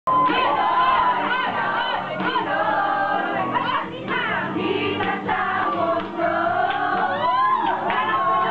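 A crowd of women singing together loudly at full voice, with a few high rising-and-falling whoops over the singing.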